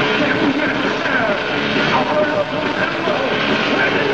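Heavy metal band playing live in a lo-fi concert recording: a loud, dense wall of distorted instruments, with pitched notes that slide up and down.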